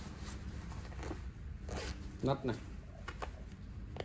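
Zipper on a nylon rain jacket being pulled in a few short strokes, with the fabric rustling as it is handled.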